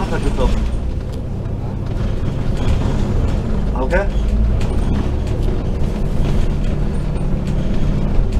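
Double-decker bus engine and road noise heard from on board while the bus drives along, a steady low drone throughout. A passenger's voice comes in briefly about four seconds in.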